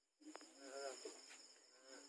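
Night insects calling in a steady high-pitched trill, with a faint voice heard twice beneath it.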